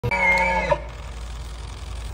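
Bull elk bugling: a high, slightly wavering whistle that is already sounding at the start and breaks off with a short grunt about three-quarters of a second in. After that only a low steady background rumble remains.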